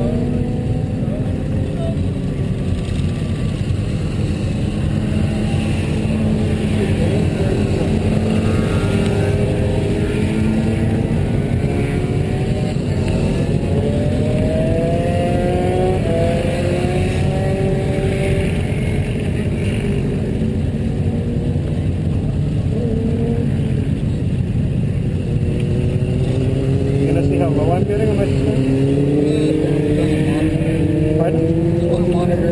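Sport-bike engines idling at a standstill, their pitch drifting slightly as the throttles are blipped, with heavy wind rumble on the camera microphone. Near the end a brief rise and fall in pitch comes as another bike goes by.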